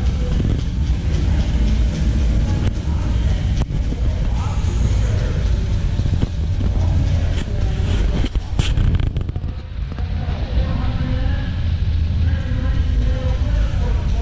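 Busy indoor exhibition-hall ambience: a steady low rumble with background music and distant crowd chatter, and a few sharp knocks.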